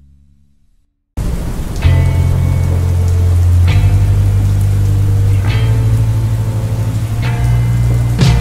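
The slowed, reverb-heavy song fades out to a second of silence. Then steady rain starts, under slow bass-heavy music that strikes a new deep note about every two seconds.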